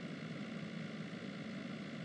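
Steady car engine hum and road noise heard from inside the cabin, a low, even drone with no change.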